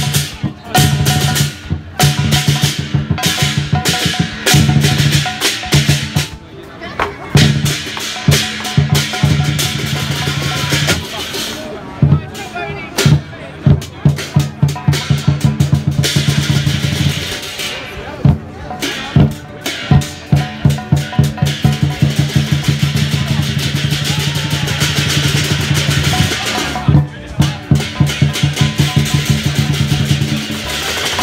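Lion dance percussion: a large Chinese drum beaten loudly and continuously, breaking into quick runs of strokes, with clashing cymbals.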